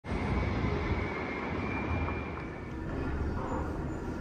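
Steady low rumble of city street noise, with a faint high tone early on that fades out a little past halfway.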